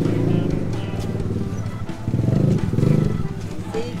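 A motorbike engine running close by, a low pulsing growl that swells twice, the louder swell between about two and three seconds in.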